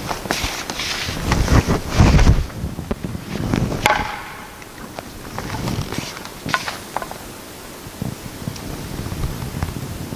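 Wooden practice swords (bokken) clacking against each other, with footsteps thudding and scuffing on a hardwood floor. Heavy footfalls around two seconds in are the loudest. A sharp wooden clack with a brief ring comes about four seconds in, and a couple more clacks come around seven seconds.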